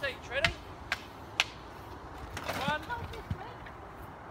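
Three sharp knocks of wood on wood in the first second and a half as scrap timber is thrown onto a pile, with voices talking in the background.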